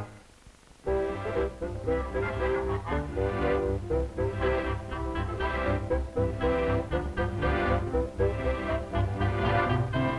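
Cartoon soundtrack music that starts about a second in after a short near-silent pause, with steady bass and held notes throughout.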